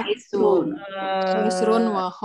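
A voice reciting words in a drawn-out, sing-song chant, with long held vowels at a fairly steady pitch.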